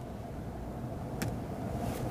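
Steady low room rumble, with a single sharp tap on a laptop keyboard about a second in and a fainter tap near the end.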